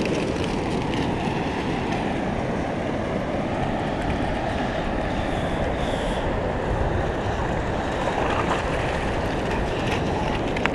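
Steady rushing noise of ocean surf breaking along the shore, even in level throughout.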